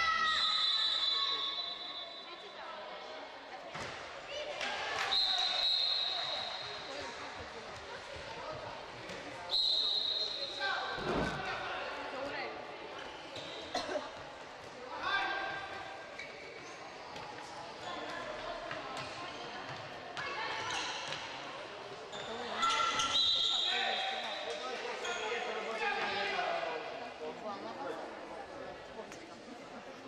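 A handball bouncing on a sports-hall floor amid players' shouts, with a few short, high, steady whistle blasts, all echoing in a large hall.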